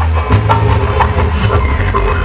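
Romantic salsa music playing loudly over a sonidero sound system, with a heavy bass line and sharp percussion strikes at a steady beat.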